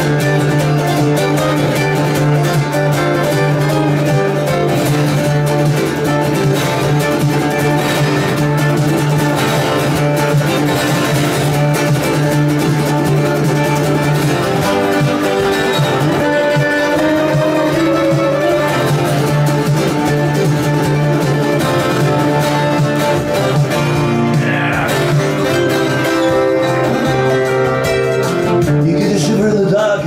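Twelve-string acoustic guitar played solo in an instrumental passage: quick picked notes over a steady low bass note, with the doubled strings giving a chiming shimmer.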